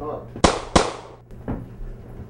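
Two sharp, loud bangs about a third of a second apart, each dying away quickly, followed by a fainter knock.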